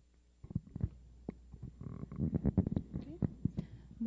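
Handling noise from a handheld microphone as it is passed from one panelist to another: a string of knocks, bumps and rustles picked up through the mic itself.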